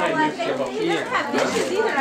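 Several people talking over one another, with no clear words: background chatter.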